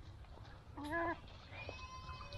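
A short animal call about a second in, followed near the end by a fainter, thinner drawn-out call.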